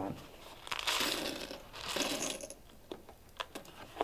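Clear glass frit dumped into a ceramic bisque tile mold: a pour of glass granules starting about a second in and lasting about two seconds, followed by a few light clicks.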